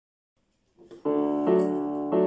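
Piano music opening with held chords: silence at first, then a chord about a second in and another about half a second later.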